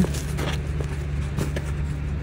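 Faint rustling and scratching of thick metallic glitter fabric being handled as a sewn corset neckline is turned right side out, over a steady low hum.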